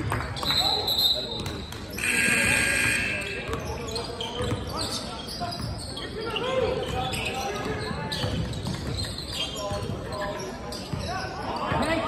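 A basketball bouncing on a hardwood gym floor, with players' voices echoing through the large hall during a game. About two seconds in there is a loud held call lasting about a second.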